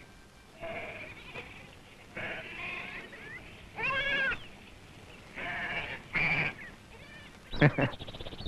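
A goat bleating several times, each call short with a wavering, quavering pitch.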